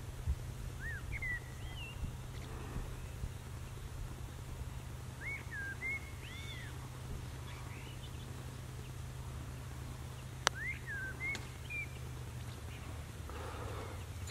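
A small bird chirping in short rising and falling notes, in three brief bouts, over a steady low rumble. About ten seconds in comes a single sharp click: a putter striking a golf ball.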